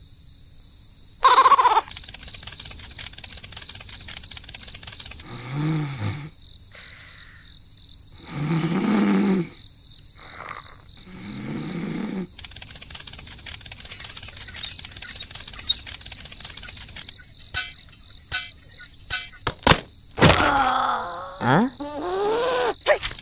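Cartoon snoring sound effect: three long snores, about three seconds apart, over a faint steady high chirping. Near the end come a few sharp knocks and a cartoon voice sliding in pitch.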